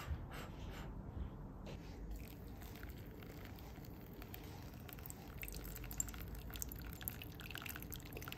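Hot water poured from a kettle in a thin stream into a drip-bag coffee filter on a mug, a faint steady trickle that starts about two seconds in.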